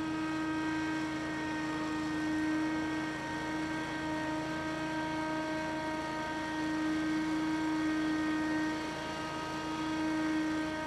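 A steady engine hum made of several held tones, some of which shift slightly in pitch or drop in and out.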